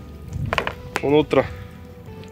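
Two short vocal syllables over faint, steady background music, with a single sharp click about halfway through.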